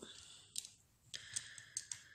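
Small plastic clicks and taps as an epilator's detachable tweezer head is handled and put down on a table: a few faint, sharp clicks, most of them in the second half.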